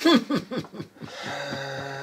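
A short musical cue: after a brief spoken 'uh', a steady held note comes in about a second in and sustains.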